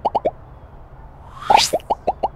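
Cartoon pop sound effects: a quick run of short rising pops, about ten a second, that stops about a third of a second in. About a second and a half in, a rising whoosh comes with a louder pop, and the quick pops start again.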